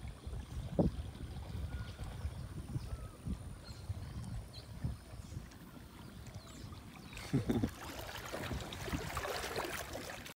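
Water rippling and lapping gently around an inner tube drifting slowly down a shallow river, with a low rumble of wind on the microphone; the rippling grows more hissy near the end.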